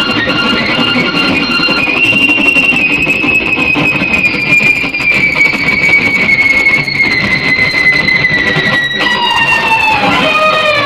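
Instrumental guitar music: a long sustained high guitar note slowly sinks in pitch over a fuller backing, then changes to a new note about nine seconds in.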